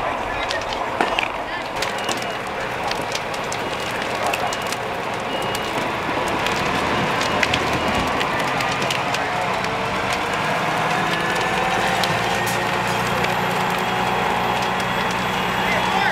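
Fireground noise at a burning house: fire crackling with many sharp snaps, voices in the background, and from about six seconds in a slowly rising whine and a steady hum from a running engine.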